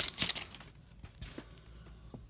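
Crinkling of a plastic card-pack wrapper as the stack of hockey cards is slid out, for about the first half-second. It is then quiet apart from a few faint taps.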